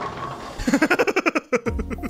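A man laughing hard in quick, repeated bursts, about eight a second, breaking off about a second and a half in.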